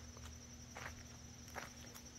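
A few faint, soft footsteps over a quiet outdoor background with a low hum and a thin, steady high tone.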